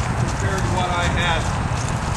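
Hoofbeats of a Friesian horse cantering on the soft dirt of a round pen, with a voice over them.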